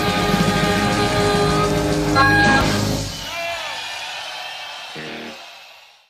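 Live blues-rock band playing the song's final chord, with a last strong accent about two seconds in. The chord then rings out with a few bending notes and fades away near the end.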